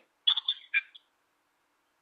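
A few short, thin, muffled sounds from the far end of a telephone call in the first second, then the line goes silent.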